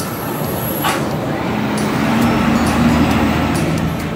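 A heavy vehicle passing on the street, its engine rumble and road noise growing louder to a peak about three seconds in.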